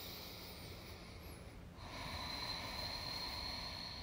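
Faint, slow breathing with no words: one soft breath, then a slightly louder, longer breath that begins about two seconds in.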